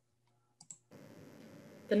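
Two quick, faint computer mouse clicks about half a second in, followed by a faint steady hiss.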